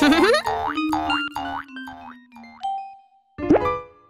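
Cartoon score with a rapid series of springy boing sound effects, about five in a row, over a descending bass line. Then comes a short held note, and a quick rising glide near the end.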